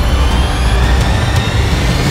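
Loud, deep rumble with a faint rising whine over it: a trailer sound effect, like a jet engine.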